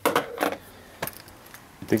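A few short, light clicks and knocks: a cluster right at the start, another shortly after, and a single one about halfway, over quiet room tone.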